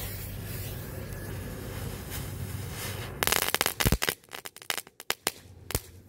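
Small ground flash fountain with a crackle effect (a 'Knatterfritze') spraying with a steady hiss. About three seconds in it breaks into a rapid run of sharp crackling pops, which thin out to scattered single cracks.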